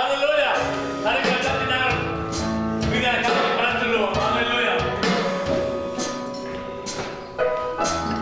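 Live worship music: keyboard and violin with a steady beat of percussive hits, and a man's voice over the microphone in the first half.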